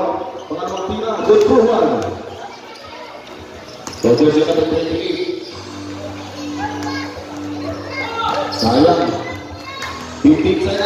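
A basketball bouncing on a concrete court amid voices from the crowd and the game's announcer. A steady tone sounds for about three seconds in the middle.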